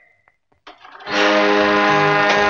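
Near silence, then music starts about a second in and holds on a sustained chord: the soundtrack of a projected film of a stage performance.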